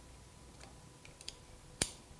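Light metallic ticks from an 8 mm open-end wrench being set onto the hose fitting bolt of a Magura MT6 hydraulic disc-brake lever: a couple of faint ticks, then one sharp click near the end.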